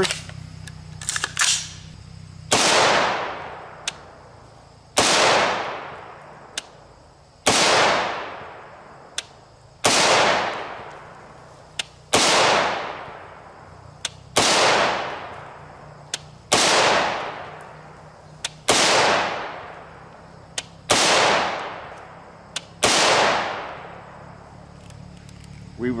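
Ten semi-automatic rifle shots from a 20-inch AR-15 firing 5.56 NATO M193 55-grain FMJ, fired slowly and evenly about two and a half seconds apart. Each loud crack is followed by an echo that dies away over a second or so. A few small sharp ticks come between some shots, and there are clicks just before the first shot.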